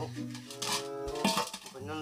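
Metal clinks and rattles from a large aluminium pot as a cord is handled against it, the loudest clink a little past halfway, over background music.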